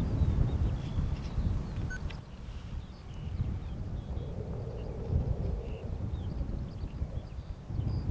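Wind buffeting the microphone with an uneven low rumble. A distant F-15 jet on a dry pass faintly swells and fades in the middle.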